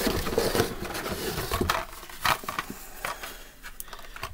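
Cardboard box flaps and plastic blister-carded toy cars being handled and rummaged through, with rustling and a few sharp taps and clicks. The rustling is busiest in the first half and then eases off.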